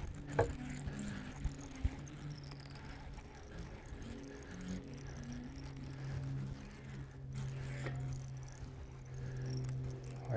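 A low, steady mechanical hum with fainter tones shifting above it, and a few light clicks in the first two seconds.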